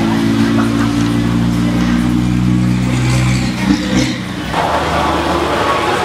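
A motor vehicle's engine running nearby with a steady low hum. Its pitch shifts slightly about two seconds in, and it stops about four seconds in, leaving a broad noisy hiss.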